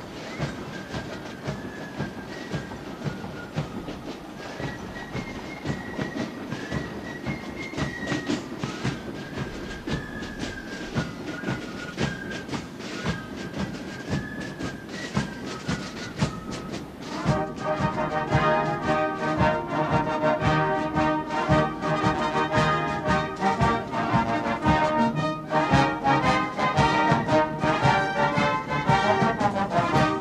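Military marching drums, side drums and bass drum, beating a quick march with a thin, high fife tune over them. About seventeen seconds in, a full military band joins with loud brass chords.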